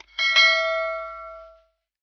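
Notification-bell chime of a subscribe-button animation: a short click, then one bell ding with several overtones that fades away over about a second and a half.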